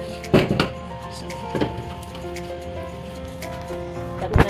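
Background music with steady held notes. A short loud knock comes about a third of a second in, and a fainter one comes about a second and a half in.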